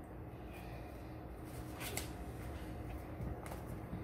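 Quiet room tone with a few faint handling sounds as a piece is pressed firmly down onto a sticky vinyl sheet inside a mold box.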